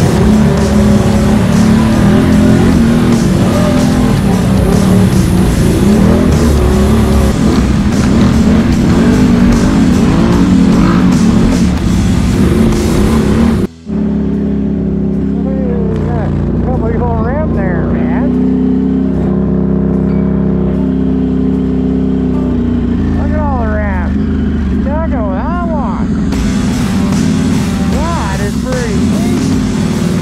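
A Can-Am Renegade X-MR 1000R's V-twin engine runs hard as the ATV ploughs through water, with heavy spray splashing. About halfway through, the sound breaks off abruptly for a moment. After that comes a steadier passage with wavering, rising and falling tones over it.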